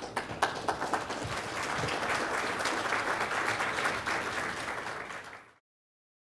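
Audience applauding, swelling over the first two seconds, then cut off abruptly about five and a half seconds in.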